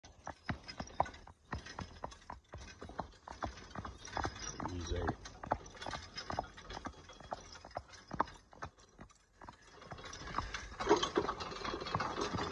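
A horse's hooves clip-clopping at a walk on pavement: a steady run of sharp hoofbeats.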